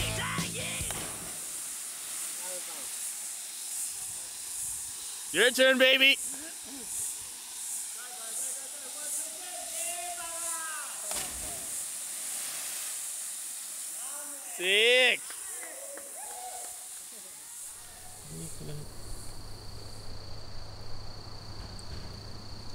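Steady rush of a waterfall into a rock pool, broken by two short loud shouts, about six seconds in and again near fifteen seconds, with brief voices between. Near the end a steady insect buzz comes in.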